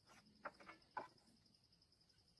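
Two faint wooden knocks, about half a second and a second in, as a teak plank is lifted and shifted on a stack of boards, over a steady high-pitched insect trill.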